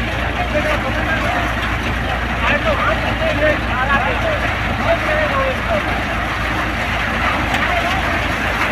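Groundnut thresher running at a steady speed with a continuous low drone while groundnut plants are fed into its hopper.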